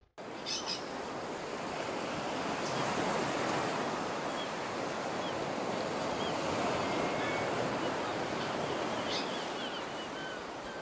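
Steady rushing noise of waves and wind, swelling slightly, with a few faint short bird calls.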